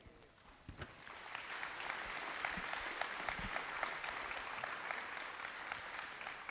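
Faint, scattered applause from a small audience: it starts about a second in and thins out near the end.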